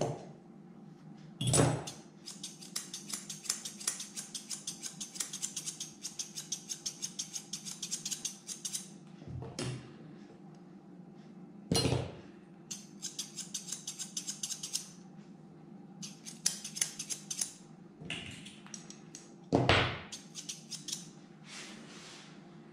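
Steel grooming scissors snipping through a dog's curly coat in quick runs of cuts, about four or five snips a second, with pauses between runs. Three louder single knocks come near the start, about halfway through and near the end.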